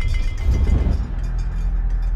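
A deep rumbling drone from the soundtrack that sets in suddenly just before and holds steadily, swelling louder in the first second.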